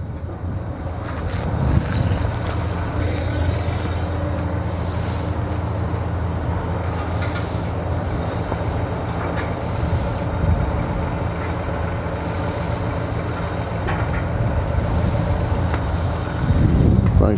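A truck engine idling steadily with a low, even hum, with a few sharp clicks or knocks over it.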